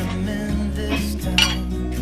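A single sharp metallic clink from the metal lid of a frozen juice concentrate can, about one and a half seconds in, over background music.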